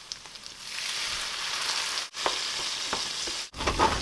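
Chicken wings sizzling in a nonstick frying pan as a dark liquid is poured in, a steady hiss that swells about a second in. It breaks off briefly twice, and a short, louder burst comes near the end.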